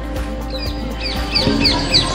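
A bird calling a run of short, high, falling chirps, about four a second, starting about half a second in, over quiet background music.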